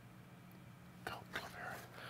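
Quiet room tone with a faint low hum, then, from about a second in, a man's faint breaths and soft mouth sounds just before he speaks.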